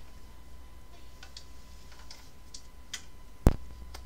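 Faint, scattered light clicks and rustles as things are handled close to the microphone, then one sharp, loud knock about three and a half seconds in.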